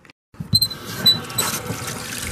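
Water splashing and trickling, starting about half a second in.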